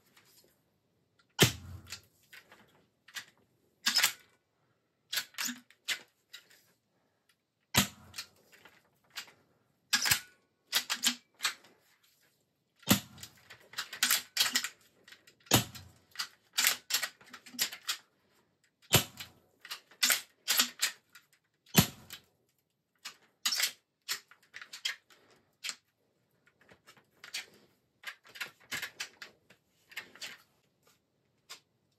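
AEA HP Max .357 (9mm) PCP air rifle firing six shots a few seconds apart. Each shot is followed by sharp clacks as the cocking lever is worked and the 3D-printed PLA stick magazine slides on to the next pellet. Near the end the action gives only clicks and no shot: the seven-shot magazine is empty and blocks the lever.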